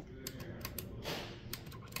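Light, separate clicks of the newly fitted on-off switch on a Lelit espresso machine's front panel being pressed and handled by fingers, with a short rush of noise about a second in.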